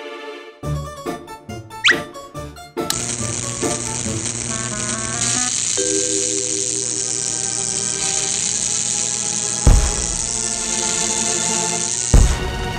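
Cartoon background music with comic sound effects: a quick run of short plucked notes and a rising whistle glide, then a steady high hiss under the music, with one sharp bang about ten seconds in.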